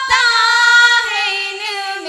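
Two women singing a Hindi devotional bhajan into microphones, holding one long high note that falls slightly about a second in.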